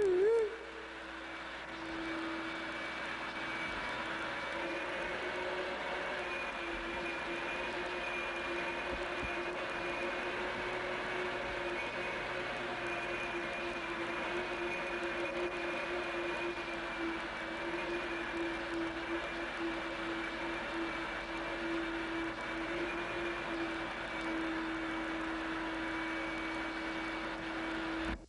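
A steady machine drone with a held low hum and a faint high whine over a noisy bed, running without change and cutting off suddenly at the end.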